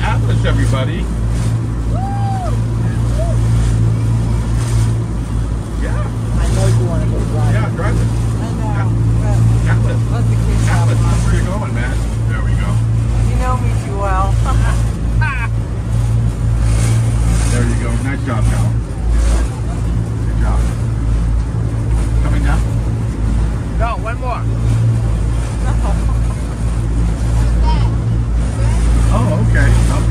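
Amphibious duck tour boat running on the water: a steady low engine drone with water washing along the hull. Passengers' voices can be heard now and then.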